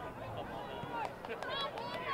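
Unintelligible shouting and calling voices of players and onlookers at a soccer match, with a few sharp clicks about a second and a half in.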